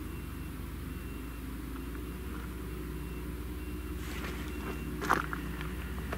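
Grimme Varitron 470 self-propelled potato harvester running steadily at a distance, its engine a low hum. Rattling and clicking join in over the last two seconds, with a sharp click about five seconds in.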